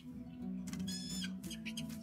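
A falcon's high call, once, about two-thirds of a second in, over soft sustained background music.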